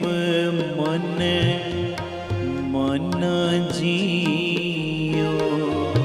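Live Sikh shabad kirtan: sustained harmonium chords under a sung melody with held, bending notes, punctuated by tabla strokes.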